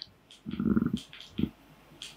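Low rubbing rumble of clothing against a clip-on microphone: a short stretch about half a second in, then a brief second bump.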